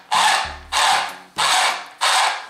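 Gear train of a 1/8-scale RC car's rear end turned by hand: the new, correctly pitched pinion meshing with the spur gear in rasping strokes about every half second, each starting sharply and fading. It meshes far more smoothly than the previous wrong-pitch (32-pitch) pinion did.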